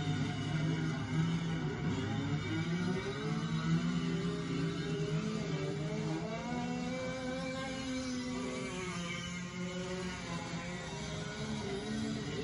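Go-kart engines running, their pitch rising and falling as the karts pass through a turn, over a steady low drone.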